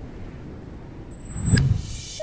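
Edited transition sound effect: a steady low rumbling noise, then a loud low boom with a sharp click on top about one and a half seconds in.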